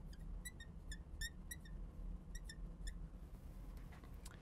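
A marker squeaking on a glass lightboard as a word is written: about a dozen short, faint, high squeaks in quick groups over the first three seconds.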